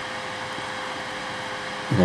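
Steady background hiss with a faint constant hum, unchanging throughout, with no distinct event.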